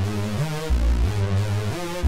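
Roland JUNO-60 software synthesizer playing a lead line, a new note about every half second. It uses a pulse-width-modulated patch whose upper tones waver. The low end is heavy, with the Juno-106-style high-pass filter set to its bass-boost position.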